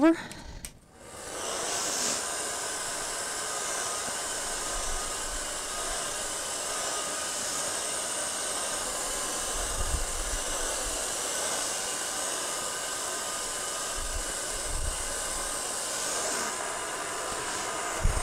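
Mini blow dryer switching on about a second in, then running with a steady airy hiss and a faint motor hum, as it blows a flood of white acrylic paint across the poured colours.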